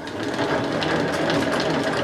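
Hand-cranked plastic yarn ball winder spinning fast, its gears giving a steady, even whirring rattle as silk yarn winds onto a cardboard tube fitted over the spindle.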